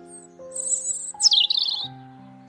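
A robin sings one short, loud, high phrase: a held very high note, then a sharp downward sweep into a warbled trill. Soft background music with slow, sustained notes plays underneath.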